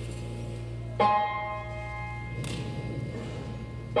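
Slow live rock intro: electronic keyboard chords struck about a second in and again at the end, each ringing and fading, over a steady low hum.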